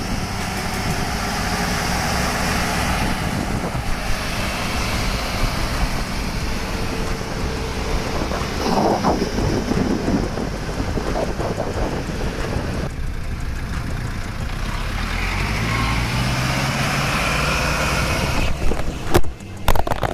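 Vehicle engines running on the move, with wind buffeting the microphone; an engine note rises steadily for a few seconds near the end.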